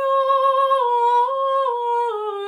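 A woman singing solo and unaccompanied in Znamenny chant, tone 4: a long held note on one vowel that dips a step and returns, then begins to step down near the end.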